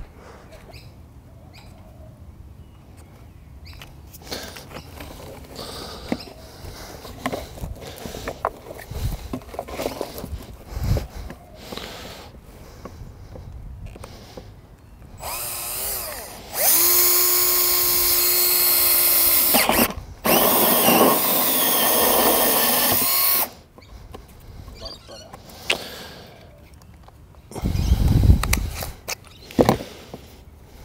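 Cordless drill with a hole saw cutting through the plastic wall of an irrigation valve box: a steady motor whine in two runs of about three seconds with a brief stop between, after a short, softer start. A few low knocks follow near the end.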